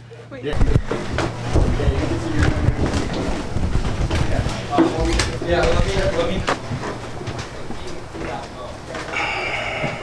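Handheld camera jostled while being carried at a walk: irregular low thumps and rustling of handling and footsteps, with voices in the background.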